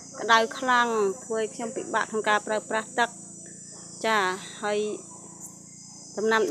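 A woman speaking Khmer in short phrases over a steady, high-pitched drone of insects, heard alone in her pauses.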